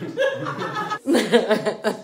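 A woman laughing, chuckles in two bursts with a short break about halfway.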